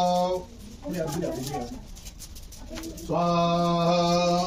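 Mantra chanting by a man's voice in long, steady held notes: one note ends just after the start, a softer phrase follows about a second in, and another long note begins about three seconds in.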